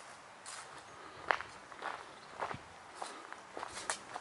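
Footsteps of a person walking at a steady pace, each step a short crisp scuff, a little over half a second apart.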